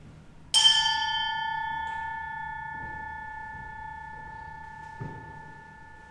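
A bell struck once, its clear ringing tone of several pitches fading slowly over about five seconds, with a soft knock near the end.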